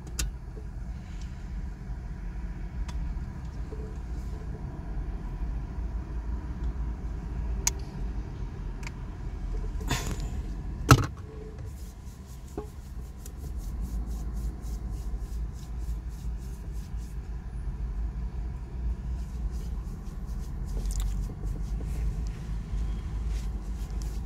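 Car engine idling, heard from inside the cabin with the window open: a steady low rumble. A few scattered clicks, the loudest a sharp knock about eleven seconds in.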